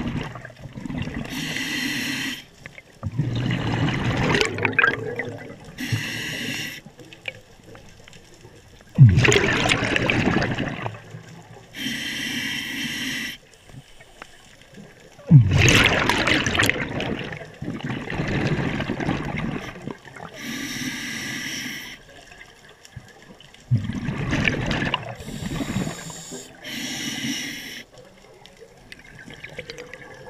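A scuba diver breathing through a regulator underwater in a slow, regular cycle. Short hissing inhalations through the demand valve alternate with longer bubbling rushes of exhaled air, about five breaths in all.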